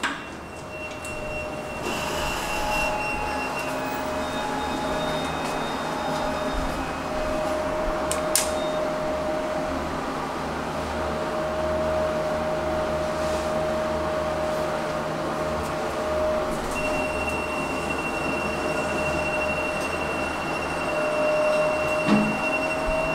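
Express Lift Co. passenger lift running down, a steady rumble under a steady hum, with a higher whine at the start and again near the end. Sharp clicks about two and eight seconds in.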